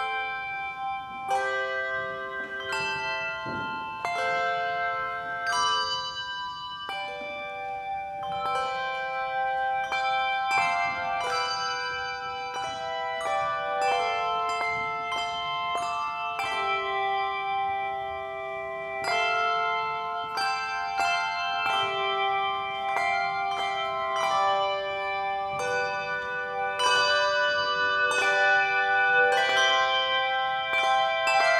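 A handbell choir ringing a piece: struck bell chords and melody notes that ring on and overlap one another.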